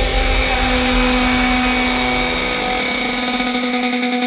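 Electronic dance music build-up: a held synth note under noisy sweeping synth effects, with a pulsing low bass.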